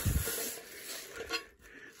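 Handling noise from an aluminium pedalboard being moved on a cloth-covered surface: a soft rustle with a couple of light taps about a second and a half in.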